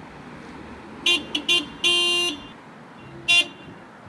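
A car horn honking: a few short beeps about a second in, then a longer blast, then one more short beep near the end.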